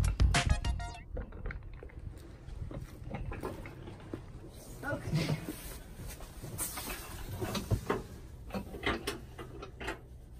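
Background music cuts off about a second in. After that come scattered light knocks, taps and rustling from someone moving about in a pickup bed under a soft tonneau cover.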